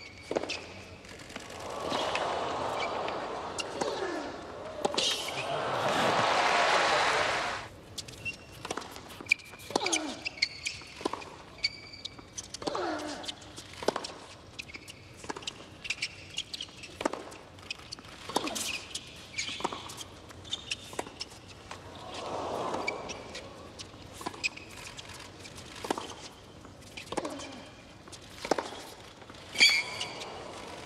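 A tennis rally on a hard court: sharp racquet strikes and ball bounces about a second apart, with short player grunts on some shots. Crowd applause and cheering builds near the start and cuts off suddenly about eight seconds in, and a brief crowd murmur rises later.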